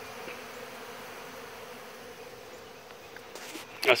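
Steady hum of a dense crowd of honey bees swarming open sugar-water feeders, feeding heavily as hungry bees do in a nectar dearth.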